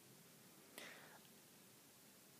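Near silence: room tone, with one faint breathy sound about a second in.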